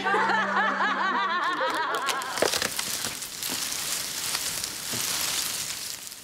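Hearty laughter for about two seconds, then a crinkly rustling hiss of loose magnetic videotape strands.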